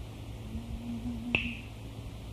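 A single sharp click about one and a third seconds in, over a faint, steady low note that is held for about a second, with a constant low hum underneath.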